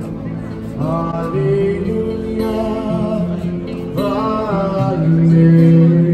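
Street busker singing long, held notes through a small amplifier, accompanied by guitar.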